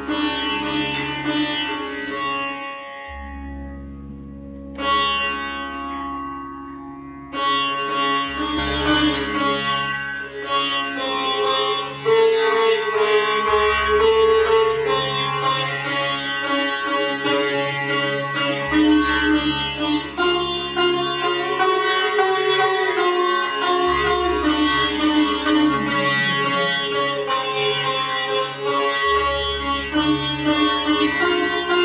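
Sitar played solo over a steady low drone. Slow single plucked notes ring out and die away at first, then the playing turns into quicker, denser runs and grows louder about twelve seconds in.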